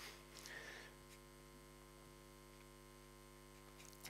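Near silence with a steady electrical mains hum, and a faint brief sound about half a second in.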